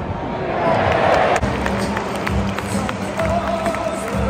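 Football stadium crowd noise with music over it; steady held notes come in about a second and a half in.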